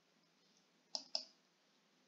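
Two short computer mouse clicks about a fifth of a second apart, a second in, against near silence.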